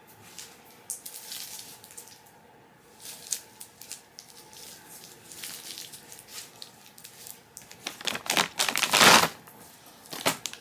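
Plastic Starburst candy bag and wrappers crinkling as they are handled, in scattered rustles with the loudest burst of crinkling near the end.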